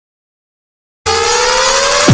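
Silence for about a second, then a synthesized tone rising slowly in pitch over a wash of hiss: the build-up that opens an electronic rave track.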